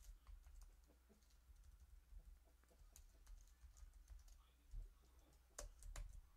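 Faint, irregular keystrokes on a computer keyboard, typing, with a couple of louder key clicks near the end.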